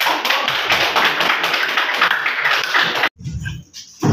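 Audience applauding, many hands clapping in a dense patter that cuts off abruptly about three seconds in.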